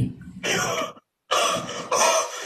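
A man coughing and clearing his throat in two rough bursts, the second longer, with a moment of dead silence between them.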